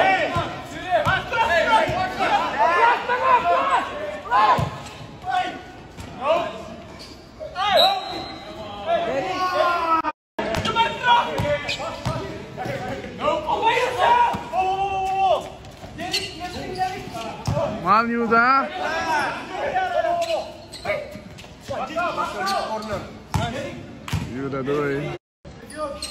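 A basketball being dribbled and bounced on a court during a scrimmage, with players shouting to each other in a large hall. The sound cuts out abruptly for a moment twice, about ten seconds in and near the end, at edits between clips.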